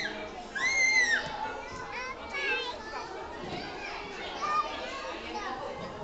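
Small children playing and calling out, with a high child's squeal that rises and falls about half a second in, over a steady background of chatter from children and adults.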